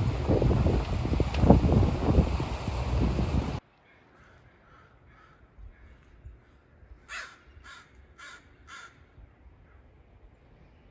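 Wind buffeting the microphone over the motor of a small aluminium ferry boat under way, cut off suddenly about a third of the way in. After a quiet stretch, a crow caws four times about half a second apart.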